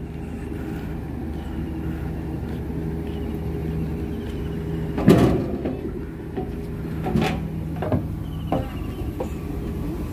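Steady low hum from a standing passenger train at the platform, with knocks and thuds of someone boarding through the carriage doors: a loud knock about five seconds in, then a few lighter ones over the next three seconds.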